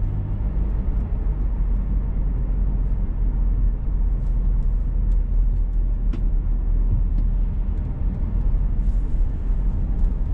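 Car driving, heard from inside the cabin: a steady low rumble of road and engine noise, with a few faint clicks.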